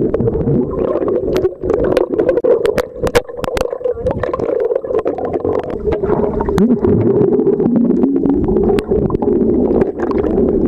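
Underwater sound picked up by a camera held below the surface: a steady muffled hum with many sharp clicks and crackles of water and bubbles, and a brief rising tone about six and a half seconds in.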